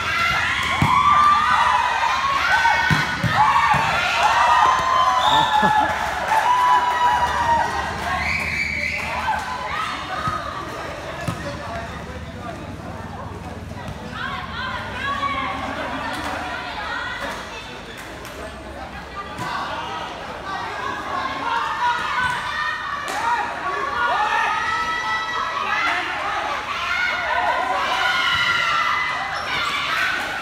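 Futsal game: players shouting and calling to each other, with thuds of the ball being kicked and bouncing on the hard court floor. The voices drop away for several seconds midway, then pick up again.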